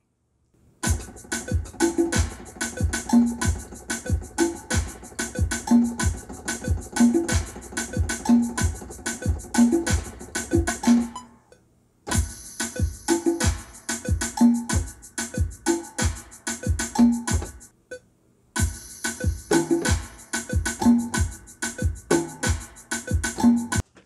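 Programmed electronic drum and percussion loop for a tarraxa beat, a steady kick pattern with pitched percussion hits, played back from music production software. It stops and restarts twice, about 12 and 18 seconds in, as different percussion parts are played.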